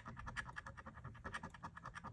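A coin scraping the coating off a paper scratch-off lottery ticket in rapid, short, even strokes, faint and papery. The coating is tough going for the coin.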